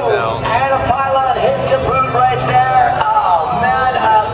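A man commentating on the air race over a public-address loudspeaker, with a steady low engine drone underneath from the race plane flying the course.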